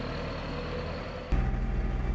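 Farm tractor engine running steadily, heard from inside the cab. About a second and a half in it steps up to a louder, deeper drone.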